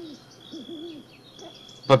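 Quiet, hesitant voiced hums from a person pausing between words, low and wavering, over a faint steady high-pitched whine. Speech starts again at the very end.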